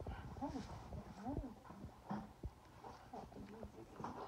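A border collie puppy moving about on a quilted nylon blanket, with a few short rising-and-falling vocal sounds in the first second and a half and two sharp knocks around the two-second mark.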